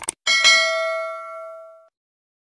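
Subscribe-animation sound effects: a quick double mouse click, then a bell notification chime that rings out and fades away over about a second and a half.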